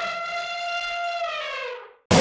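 A synthesized sound-effect tone on an animated title card: it starts with a quick upward sweep, holds one steady pitch, then slides down and fades out near the end.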